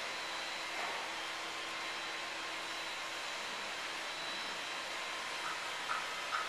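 Steady, even rushing noise that does not change, with no distinct events in it.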